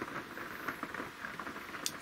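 Rain pattering steadily on the roof of a camper, heard from inside.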